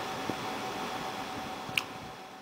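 Cooling fans running, a steady whooshing noise with a faint steady tone in it, broken by a short click near the end.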